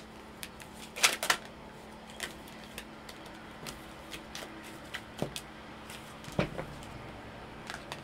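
A tarot deck being shuffled and handled by hand: a string of light, irregular clicks and flicks of cards, the sharpest pair about a second in.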